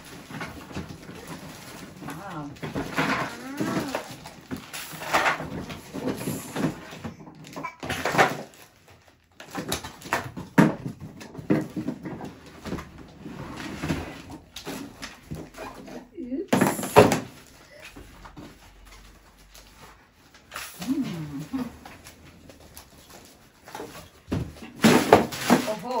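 Toddlers babbling and calling out wordlessly, mixed with the rustle and knocks of a cardboard box and plastic toy parts being unpacked.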